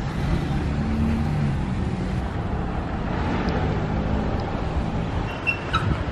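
Steady rumble of road traffic and car engines.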